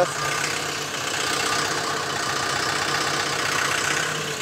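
LOVOL 1054 tractor's diesel engine running steadily, with no change in speed.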